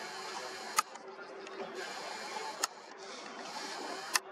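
Camera handling noise while zooming in: two sharp clicks about two seconds apart over a steady hiss and faint low hum.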